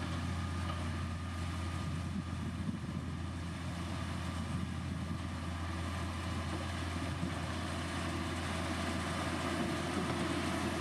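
Motor grader's diesel engine running steadily while the machine creeps forward spreading soil and gravel.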